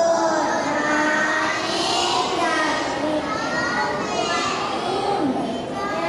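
A class of young children singing together in unison, their voices holding and gliding between notes.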